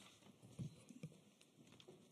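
Near silence: room tone with a few faint, soft taps.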